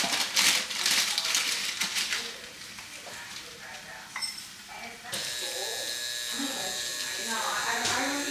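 Dry rolled oats scooped and poured into a bowl, a grainy rustle over the first couple of seconds. About five seconds in, a kitchen tap starts running steadily, its water splashing onto the oats in the bowl over a stainless steel sink.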